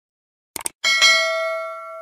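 Subscribe-animation sound effect: two quick clicks, then a notification bell ding struck twice in quick succession that rings out and fades over about a second and a half.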